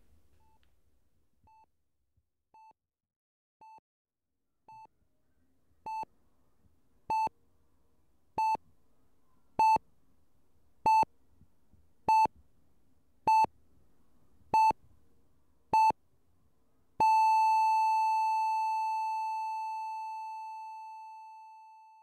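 Heart monitor beeping at an even pace, a bit under once a second and growing louder. About 17 seconds in it changes to one unbroken flatline tone that slowly fades away, the signal that the heart has stopped.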